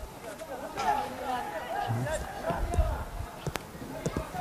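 Footballers' voices calling faintly across an open pitch, with a single sharp knock about three and a half seconds in.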